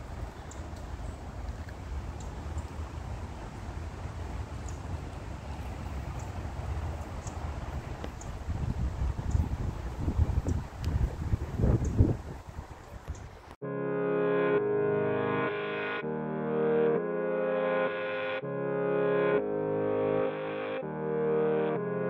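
Wind buffeting the microphone outdoors, the gusts growing stronger before the sound cuts off suddenly. It is followed by background electronic music with synthesizer chords changing about once a second.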